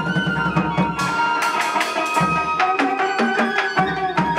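Chầu văn ritual music: drums and a wooden clapper keep a quick, regular clicking beat under a melody line of held notes that steps down in pitch about halfway through.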